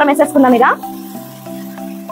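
Background music with held notes and a pitched melody in the first second, over the faint sizzle of tomato-onion masala frying in an aluminium pan as a wooden spatula stirs it.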